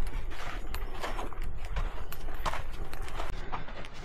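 Footsteps of hikers walking on a sandy, gravelly dirt trail, about two to three steps a second, over a low steady rumble.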